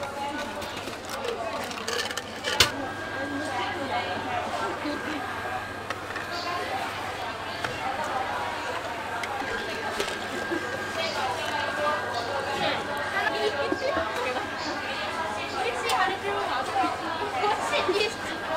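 Indistinct chatter of people talking, with a sharp knock about two and a half seconds in and a thin steady tone running under the voices from then on.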